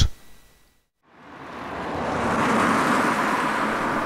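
Nissan Leaf electric car driving past on an asphalt road, heard mostly as tyre noise. It fades in about a second in and swells to a steady level.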